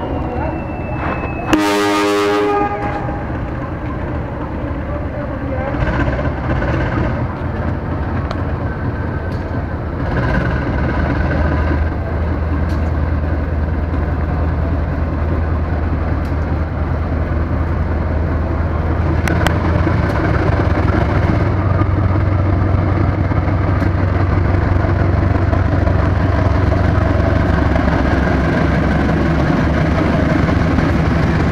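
A diesel-electric locomotive sounds its horn once, a loud blast of about a second, near the start. Then its engine rumble builds steadily as the train runs in toward the platform, growing louder toward the end.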